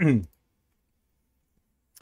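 The last syllable of a man's spoken word, then quiet room tone, with a single short, sharp click near the end.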